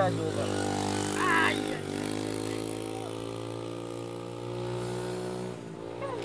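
A motor vehicle's engine running at a steady idle, holding one even pitch, which cuts off just before the end.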